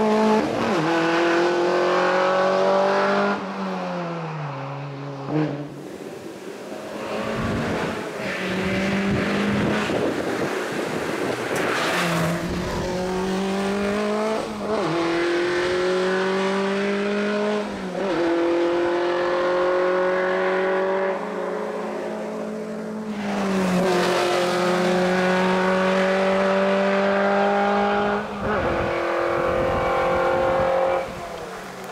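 Škoda 120 LS race car's rear-mounted four-cylinder engine at full throttle up a hill climb, its pitch climbing steadily in each gear and dropping at every upshift, several times over. In the middle the engine note fades for a few seconds under a rougher rushing noise.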